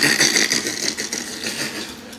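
A man's breathy laughter, loudest at the start and fading away.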